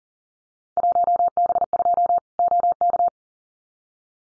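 Morse code sent at 40 words per minute as a single steady tone of about 700 Hz, keyed in fast dots and dashes in five short groups: a Field Day contest exchange. It starts about a second in and stops about three seconds in.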